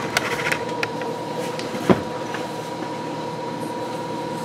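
A steady mechanical hum with a thin high whine running through it, with a few faint clicks near the start and one sharper tap about two seconds in.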